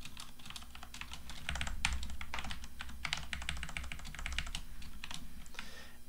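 Computer keyboard typing: a quick, irregular run of key clicks as an equation is entered, over a low steady hum.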